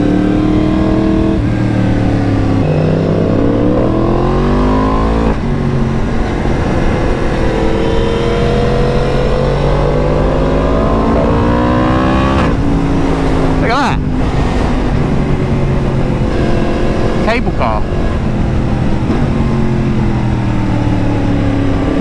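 Yamaha MT-10's crossplane inline-four engine pulling hard through the gears, its pitch climbing twice and breaking off at each upshift, then running steadier through the bends, over wind rush. A few short sharp sounds come in the second half.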